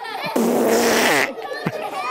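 A loud, raspy fart-like noise lasting about a second, a comedy gag sound, followed by a short falling vocal glide.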